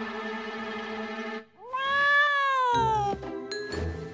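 Orchestral cartoon music with held notes breaks off, then a cartoon cat character gives one long meow-like vocal call that rises and then slides down in pitch. Light plucked music comes back near the end.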